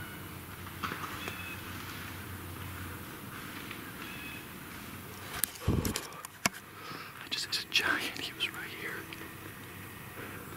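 Handling noise from a camera being moved against camouflage clothing: quiet woods background for the first half, then sharp clicks and a heavy thump about halfway in, followed by rustling and knocks.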